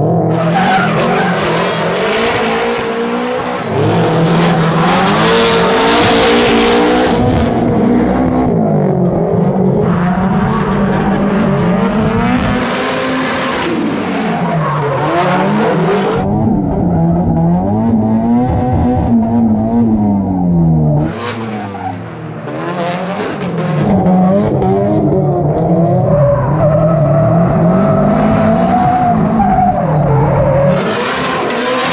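Two Nissan S13 drift cars drifting in tandem: their engines rev up and down over and over with the throttle, and the tires squeal and skid in several long stretches.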